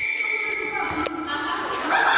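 A whistle blown to start the bout: one steady shrill note held for about a second, ending with a sharp click. Then the hubbub of children's voices as the two pull for the ring.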